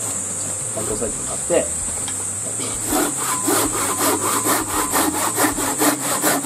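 Japanese pull saw (nokogiri) cutting through a wooden board with two-handed strokes, cutting on the pull. The strokes are slower and softer at first, then quicken about halfway through into an even rhythm of about four strokes a second.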